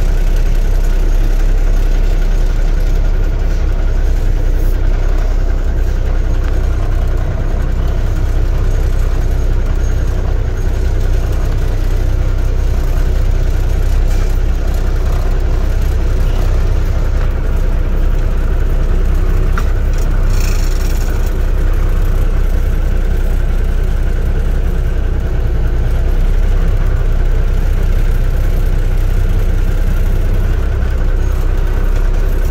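Cummins NTC400 inline-six turbo diesel of a 1980 Peterbilt dump truck idling steadily, heard from inside the cab. A brief hiss comes about two-thirds of the way in.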